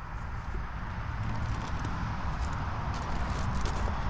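Footsteps crunching on gravel, a few faint scattered steps, over a steady low rumble on the microphone.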